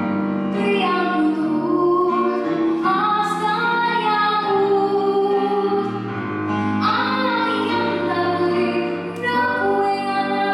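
A young girl singing a song into a microphone over musical accompaniment, her voice carried through a stage sound system.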